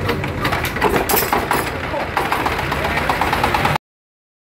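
Dongfeng S1115 single-cylinder diesel engine being hand-started, knocking in quick, even beats over a low rumble. The sound cuts off suddenly near the end.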